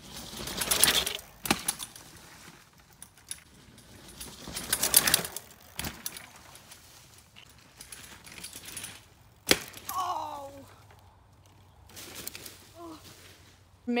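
Two loud rustling rushes through dry leaf litter and dirt, about one and five seconds in, with a few sharp knocks and cracks. A short voice call comes just after ten seconds.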